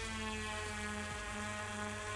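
WingtraOne VTOL drone's two electric propellers humming steadily as it hovers and is nudged forward, the pitch of the hum stepping slightly up and down as the motors adjust.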